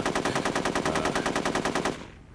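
Sustained automatic machine-gun fire: a rapid, even string of shots, roughly fifteen a second, that cuts off suddenly at the end.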